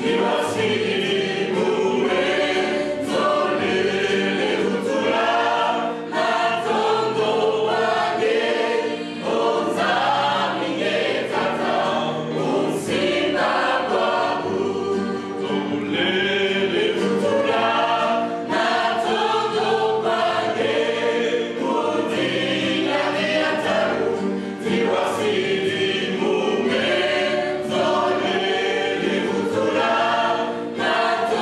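Mixed choir of women's and men's voices singing a gospel song together, loud and continuous, with a low bass line moving beneath the voices.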